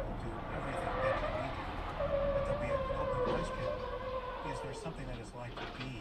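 Vehicle tires screeching in a long skid, one steady screech with a higher second tone, as a pickup towing a trailer loses control and rolls over on the freeway; the screech fades out about a second before the end.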